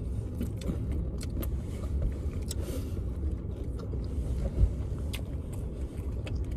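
Steady low rumble inside a car, with scattered small clicks and smacks of people chewing and handling fried chicken wings.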